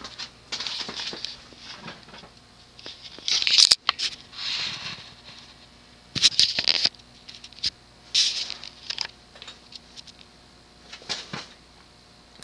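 Ceiling fan on its low speed with a faint steady hum, under irregular bursts of rustling and clicking. The loudest burst ends in a sharp click about three and a half seconds in.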